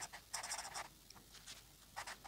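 Pen writing on paper: a few faint, short scratchy strokes, most of them in the first second.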